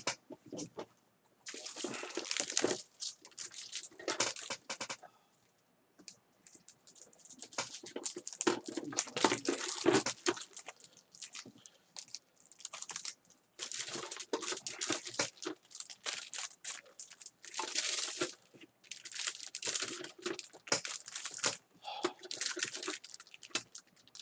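Trading-card pack wrappers crinkling and tearing as packs are opened, in irregular rustling bursts of a second or two with short pauses between them.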